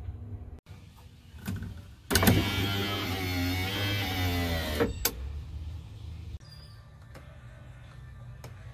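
Electric window motor in a 1992-95 Honda Civic hatchback door, newly converted from manual winders, running for about three seconds with a whine that wavers in pitch, starting and stopping with a clunk as the glass moves and stops.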